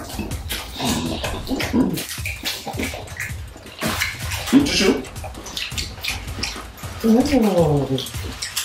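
Chewing and wet mouth sounds of people eating fried plantain with vegetable sauce: many short smacks and clicks, with brief hummed 'mm's. A drawn-out 'oh' comes near the end.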